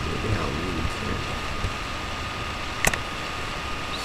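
Steady background hum and hiss with a thin, constant high whine, a brief low murmur near the start, and a single sharp click about three seconds in.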